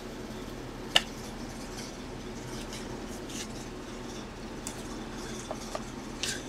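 Trading cards and rigid plastic card holders handled by hand: faint light ticks and rubbing, with one sharp plastic click about a second in, over a steady low background hum.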